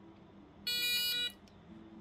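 A single electronic beep, about two-thirds of a second long, from the homemade Arduino device's buzzer as its fingerprint sensor reads a finger: the fingerprint is accepted and the device moves on to its main menu.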